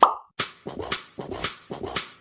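Cartoon pop sound effect with a quick falling tone, followed by a run of short tapping hits at about four a second.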